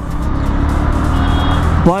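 Onboard sound of a motorcycle being ridden through city traffic: the engine running steadily under an even rush of wind and road noise.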